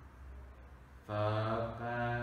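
A man's low voice, slow and drawn out on a nearly steady pitch, starting about a second in: a hypnotherapist's monotone delivery.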